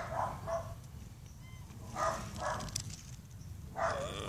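A domestic cat meowing twice, about two seconds apart, the hungry calls of a cat waiting to be fed.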